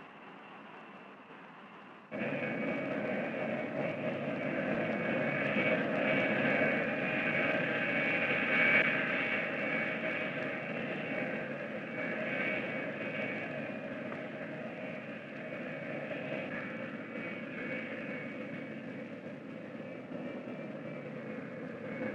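Steady drone of jet aircraft engines heard in flight, coming in suddenly about two seconds in, swelling a little toward the middle and then easing slightly.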